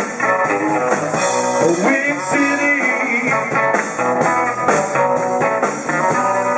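Live blues band playing: electric guitar, bass guitar and drum kit, with an amplified blues harmonica played into a hand-held microphone.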